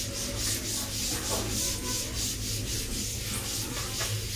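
Cloth duster wiping a chalkboard clean, a rhythmic rubbing swish in quick, even back-and-forth strokes.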